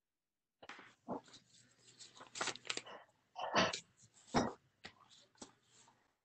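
A sheet of paper rustling and crinkling as it is handled and creased into a fold, in a string of irregular crackles with two louder ones a little past the middle.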